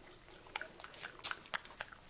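Pit bull mix puppy chewing a small treat: a few soft, scattered crunchy clicks.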